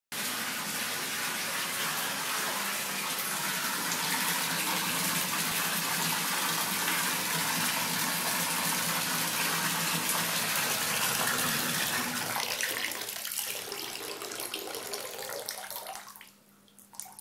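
Bath tap running into a bathtub already holding water: a steady, even rush of water. It dies down over the last few seconds.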